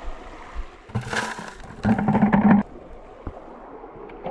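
Water sloshing and splashing as gold-sluice mats are pulled out and rinsed into a bucket during a sluice cleanout, with a short low hum just after the middle.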